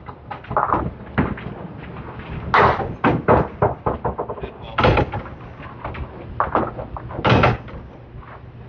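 Candlepin bowling alley sounds: a series of sharp knocks and clatters from balls hitting the lane and pins, several separate hits, the loudest about five seconds in and again near the end.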